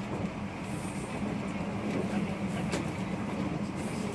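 Steady running noise inside a JR 117 series electric train car as it travels along the line: wheels rumbling on the rails, with a couple of faint clicks.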